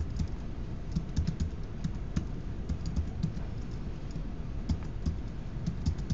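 Typing on a computer keyboard: uneven keystrokes at about three a second, with a brief lull about four seconds in.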